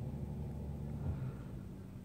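Steady low background rumble with a faint hum, easing off slightly a little past a second in.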